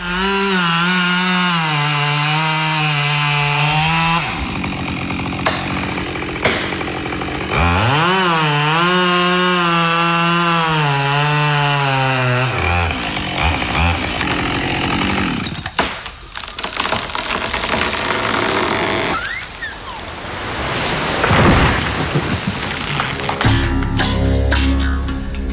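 Husqvarna 572XP two-stroke chainsaw at full throttle cutting into a tree trunk, its high note wavering as the chain bites. It eases off for a few seconds, revs up again at about 8 seconds and cuts steadily until about 12 seconds. A rougher, noisier stretch without a clear engine note follows.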